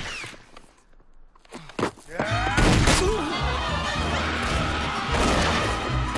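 Film action soundtrack: after a brief lull come a few sharp cracks at about two and three seconds in. Then a loud dramatic music score plays under a crowd shouting.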